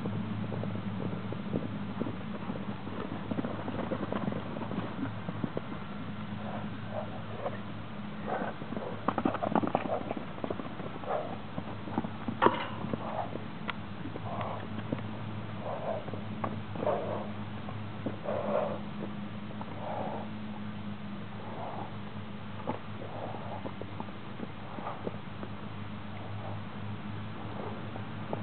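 A horse cantering loose around a paddock, its strides giving a regular beat a little faster than once a second, over a steady low hum. There is one sharp crack about halfway through.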